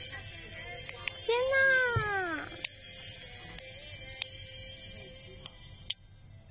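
A cat meowing once: a single call about a second long that rises and then falls in pitch, over soft background music.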